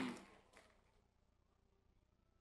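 Near silence: a voice trails off in the first moments, one faint click comes about half a second in, then only faint room tone.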